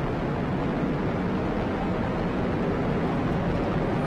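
Atlas V rocket's RD-180 first-stage engine and four solid rocket boosters firing during ascent just after liftoff: a steady, unbroken rushing noise that holds the same level throughout.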